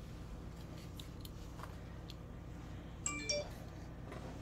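Faint clicks and knocks of a carved wood evening purse and its cord being handled and turned in the hands, over a low steady room hum. About three seconds in there is a brief, slightly louder sound holding a few steady tones.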